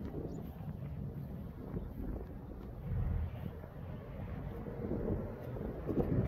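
Wind buffeting the microphone outdoors: an uneven low rumble that swells and fades in gusts.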